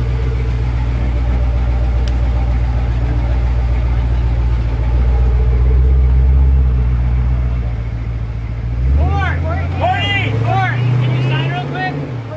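A motor vehicle's engine running close to the microphone, loud and steady, starting abruptly. Its pitch shifts about nine seconds in, and voices sound over it near the end.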